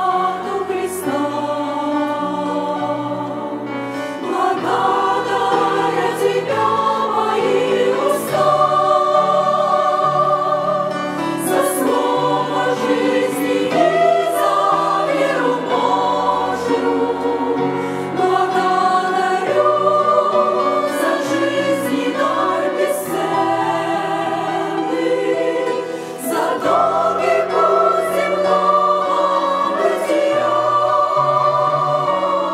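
Women's choir singing a hymn in harmony, with long held notes.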